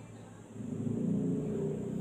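A car engine running with a low rumble, coming in about half a second in and holding steady.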